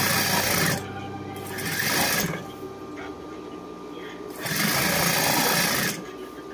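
Old sewing machine stitching fabric in three runs: a short one at the start, another about two seconds in, and a longer one from about four and a half seconds in until just before the end.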